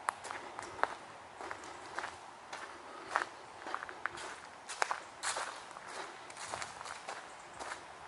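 Footsteps of a person walking on an unpaved, leaf-strewn path: a run of short, irregular crunching steps.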